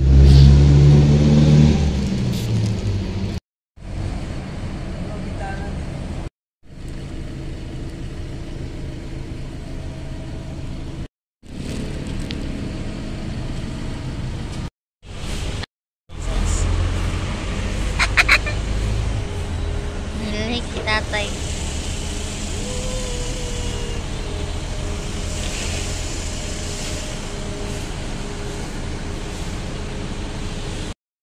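Street ambience in short clips that cut off abruptly several times, under a steady low rumble of a vehicle engine running nearby, with a few brief voices in the background.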